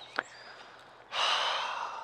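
A man's long, breathy sigh, about a second of exhaled breath starting halfway through, after a short faint click near the start.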